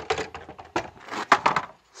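Wooden pallet-collar boards and their steel hinge plates knocking and clattering as the folding box is handled, with a cluster of sharp knocks about one and a half seconds in.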